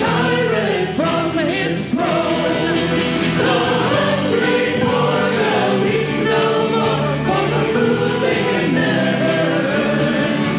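A congregation singing a hymn together, many voices at once, in a steady continuous line.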